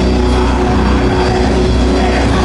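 Live heavy metal band: distorted electric guitars and bass guitar holding a loud, low, sustained droning chord.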